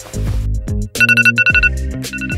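Smartphone alarm ringing: a high electronic beep pulsing on and off in short bursts from about a second in, over background music with a steady bass.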